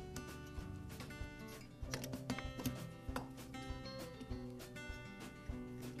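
Quiet background music of plucked acoustic guitar notes.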